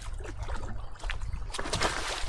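Paddle splashing in water over a steady low wind rumble on the microphone, with light splashes and a louder rush of splashing about one and a half seconds in.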